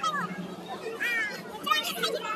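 Children talking and calling out in short, high-pitched bursts.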